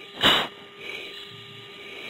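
A short, sharp breath through an oxygen-mask microphone on a fighter-jet intercom, the forced breathing of the anti-G straining manoeuvre under heavy G. It comes once, about a quarter second in, over a low steady cockpit hum.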